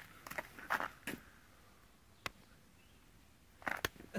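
Footsteps on snow and slush: a few short scuffs in the first second, a single sharp click a little past halfway, and another quick cluster of scuffs and clicks near the end.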